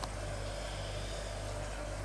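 Steady low hum with an even hiss from a running four-kilowatt continuous stripping still.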